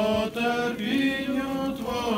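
Liturgical chant: voices singing slow, held notes in unison, stepping from one sustained pitch to the next with a short break just after the start. It is a sung response following the Gospel reading.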